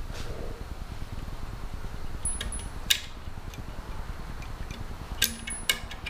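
Small clicks and handling sounds from a motorcycle horn's wiring connectors being worked by hand, with a few sharp clicks scattered through, over a steady low hum.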